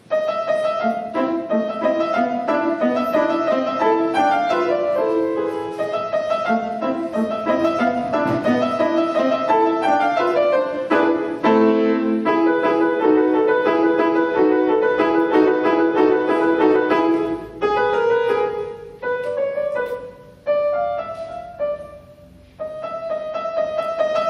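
Petrof grand piano played solo: a brisk tune over a repeated accompaniment, with two short breaks between phrases in the last few seconds.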